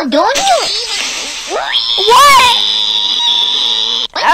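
A child's high-pitched character voice making wordless exclamations with swooping pitch, the loudest a long rising glide about two seconds in. A steady high hiss starts under it at about the same point.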